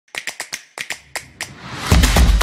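Intro sound effects: a run of about eight sharp, unevenly spaced clicks, then a rising whoosh that swells into loud intro music at the end.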